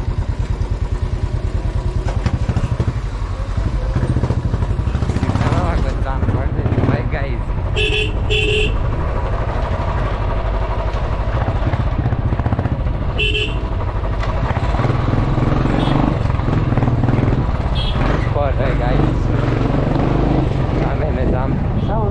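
Royal Enfield motorcycle engine running with a steady low pulse while riding slowly in traffic. Vehicle horns sound two short beeps about eight seconds in and another short beep about five seconds later.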